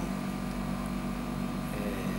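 Steady room hum with several low held tones running evenly, with no distinct events.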